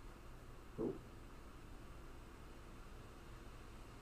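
Near silence: room tone with a faint low steady hum, broken once about a second in by a short spoken "Oh."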